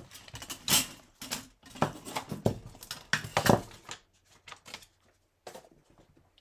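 Craft supplies rummaged on a desk while searching for a rubber stamp: a quick run of clicks, taps and rustles as things are picked up and moved, dying down to a few faint taps in the last two seconds.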